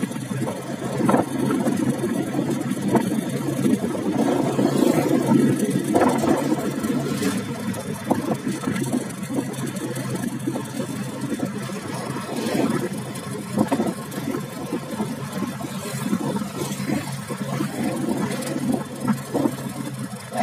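A motor vehicle's engine running steadily as it travels along a road, with a rushing road noise underneath.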